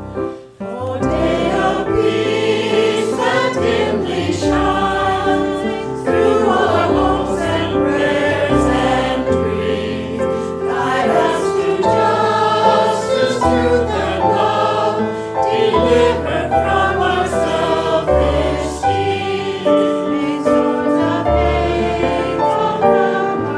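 Church congregation singing a hymn together with digital piano accompaniment, the singing coming in about a second in after a short break following the piano introduction.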